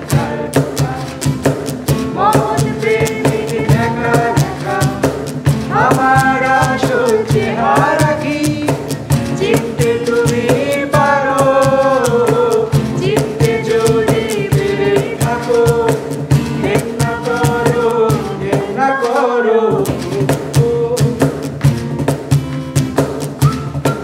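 Group of voices singing a Bengali song in unison and harmony, accompanied by strummed acoustic guitar and a steady cajon beat. The low accompaniment drops out for a moment about three seconds before the end.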